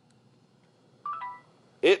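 Panasonic Lumix compact digital camera giving a short electronic beep about a second in as it powers on.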